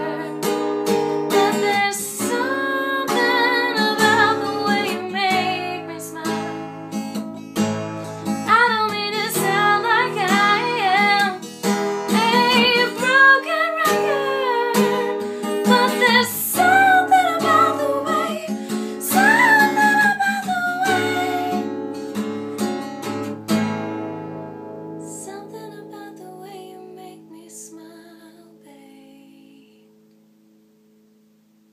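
A woman sings with a strummed acoustic guitar. Near the end the singing and strumming stop and the last chord rings out, fading away slowly.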